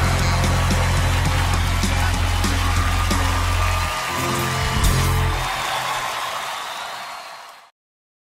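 A live country band's final sustained chord rings out under arena-crowd applause and cheering. Around four seconds in the chord breaks off, and the whole sound fades over the next few seconds before cutting off abruptly just before the end.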